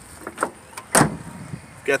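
Toyota FJ Cruiser's door being shut: one solid slam about a second in, after a couple of lighter clicks.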